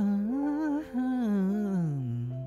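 Male voice singing a slow, soft ballad line over sustained accompaniment chords. The phrase breaks briefly about a second in, then falls in pitch to a low held note near the end.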